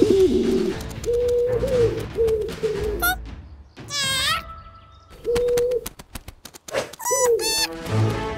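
Cartoon pigeon cooing in short, repeated coos at a steady pitch, in several runs, with a high squeaky cartoon cry about four seconds in.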